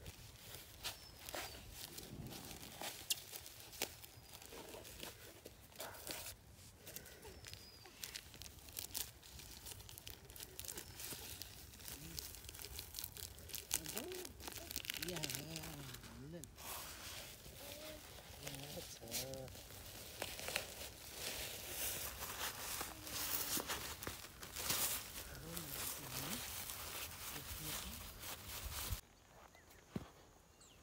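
Plastic mulch film crinkling and crackling as hands dig into planting holes cut in it and press soil around watermelon seedlings, with scattered small clicks and scrapes of soil.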